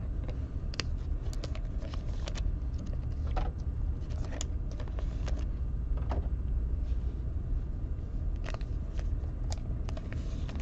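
Glossy chrome trading cards being handled and flipped through by hand: scattered light clicks and rustles as the cards slide over one another, over a steady low hum.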